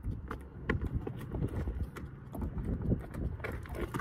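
A mustang's hooves and a person's boots stepping on stony ground and a low wooden bridge, making a run of irregular knocks and crunches.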